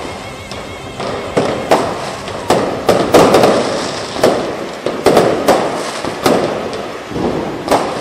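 Aerial fireworks bursting: a quick, irregular string of loud bangs, several a second at times, each trailing off into a rumble.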